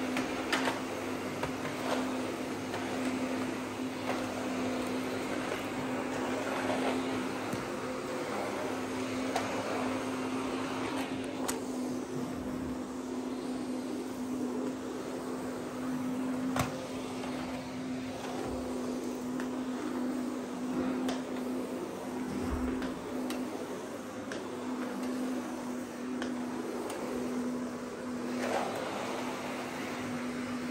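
Canister vacuum cleaner running steadily as its floor head is pushed over rugs and laminate flooring, a steady motor hum with a few light knocks of the head against edges.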